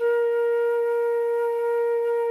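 Silver concert flute holding a single steady B-flat for four counts: one long, even note that starts cleanly with no change in pitch.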